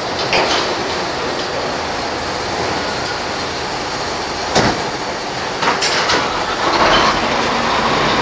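Steady rushing noise of a tank-truck loading rack at work, with a sharp metallic clank about four and a half seconds in and a few lighter knocks of metal fittings around it.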